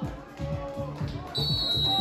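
Background music with a steady beat, and near the end a short, steady, high-pitched referee's whistle blast signalling that the penalty kick may be taken.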